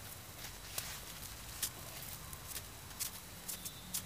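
Faint, scattered crunches and light knocks from footsteps in snow and a hammer being picked up and handled, coming more often near the end.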